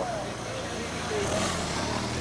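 Motorcycle engine running low and steady as the escort bike passes close by, with a rush of noise swelling in the second half.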